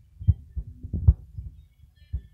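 Les Paul–style electric guitar played in short, muted strokes: four low thumps, unevenly spaced.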